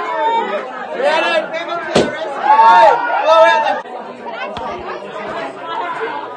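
Several people talking and laughing over one another, with a single sharp knock about two seconds in.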